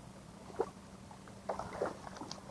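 Hooked trout thrashing and splashing at the water's surface on a light line, a short splash about half a second in, then a louder flurry of splashes around a second and a half in.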